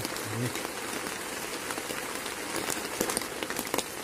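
Rain falling on a nylon tent, heard from inside: a steady patter with scattered sharper drop hits.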